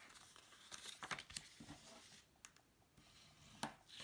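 Faint rustling and sliding of black cardstock being handled and pressed flat on a tabletop, with a few light taps and brushes.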